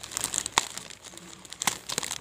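Plastic courier mailer bag crinkling and rustling as hands pull and tear it open, with two sharp snaps of the plastic, about half a second in and near the end.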